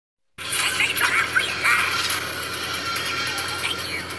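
Film soundtrack: music mixed with a robot character's processed voice, sounding thin and tinny with little bass. It starts suddenly after a brief silence.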